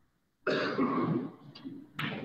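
A person loudly clearing their throat with a cough, lasting close to a second and starting about half a second in, with another sharp cough right at the end.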